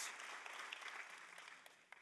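Audience applause, faint and dying away.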